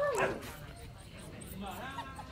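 Phu Quoc Ridgeback puppy whimpering: a falling whine at the start and a shorter, wavering one near the end.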